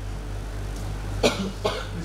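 A person coughing twice in quick succession, a little over a second in, over a low steady hum.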